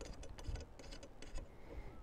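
Faint, irregular small clicks and ticks of metal parts handled by hand: a hex screw being passed through and threaded into an aluminum electronics mount bracket.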